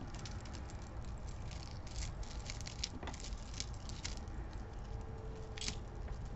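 Jewelry being handled: faint scattered light clicks and rustles over a low steady hum, with a slightly louder click near the end.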